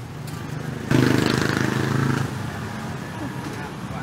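A motor vehicle engine running close by, with a hiss over its steady hum. It comes in suddenly about a second in and eases off after about a second more, over the murmur of a street crowd.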